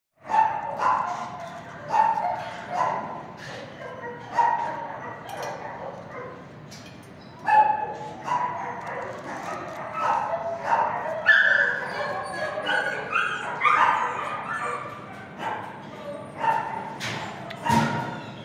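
Shelter dogs barking over and over, a bark every second or so.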